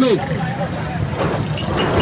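Busy outdoor market street ambience: background voices and a passing vehicle's noise that grows louder toward the end.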